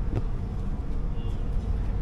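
Uneven low rumble of wind buffeting the camera microphone.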